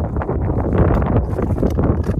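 Wind buffeting the microphone, with uneven crunching footsteps on snow and rock.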